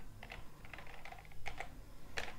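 Computer keyboard typing: a few separate keystrokes at a slow, uneven pace as a terminal command is entered.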